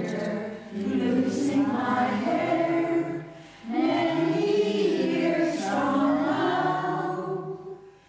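A community choir of older singers singing a slow, held melody in phrases. The voices break off briefly for a breath about three seconds in and fade out near the end.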